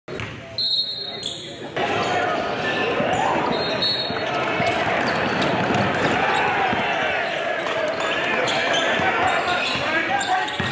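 Basketball game sound in a large gym: a ball bouncing on the hardwood court, with the voices of players and spectators echoing around it. The sound changes abruptly about two seconds in.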